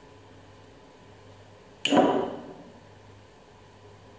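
A single sharp knock about two seconds in, loud against quiet room tone, with a short ringing tail that dies away within about half a second.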